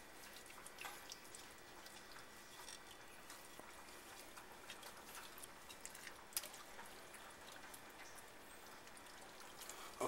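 Faint wet rubbing and patting of hands working seasoning into the skin of a raw Cornish hen, with scattered small ticks and one sharper tick about six seconds in.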